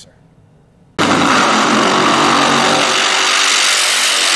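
A drag-racing funny car's supercharged V8 at full throttle during a tyre-smoking burnout. It comes in suddenly about a second in and stays loud and steady.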